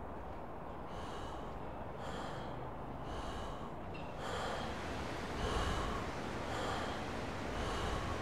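A person's fast, heavy breathing, one breath about every second, with a low background hiss. The breaths grow louder from about halfway through.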